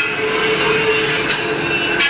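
Batasa (sugar-drop) making machine running steadily: an even mechanical noise with a faint steady tone through it.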